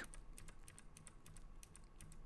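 Faint, quick, irregular clicking of computer keyboard keys being typed.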